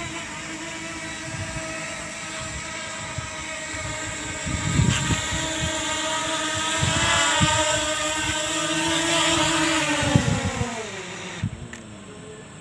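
DJI Mini 2 quadcopter's propellers and motors give a steady multi-tone whine while it flies close by and lands, with its rotor wash buffeting the microphone midway. Near the end the whine falls in pitch as the motors spin down.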